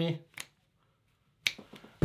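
The end of a man's spoken word, then two short, sharp clicks about a second apart with dead silence between them.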